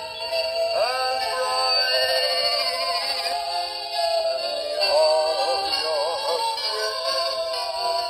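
Dandee swaying Christmas bear's built-in speaker playing its song: a sung melody over music.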